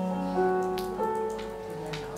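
Piano playing a slow introduction: a few notes and chords are struck and left to ring, with new ones about every half second. A few light clicks sound over it.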